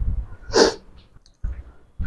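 A person's single short, sharp breathy burst about half a second in, with a few low knocks around it.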